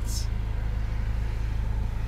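A steady low rumble with faint hiss. The tail end of a spoken word sounds at the very start.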